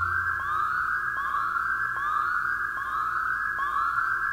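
An electronic, siren-like whooping sound effect: a rising pitch sweep repeated evenly, a little more than once a second, with no other instruments behind it.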